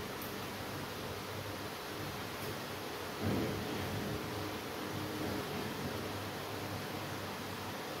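Masking tape being peeled off a freshly painted wall: faint rustling over a steady hiss, with one short louder sound a little after three seconds.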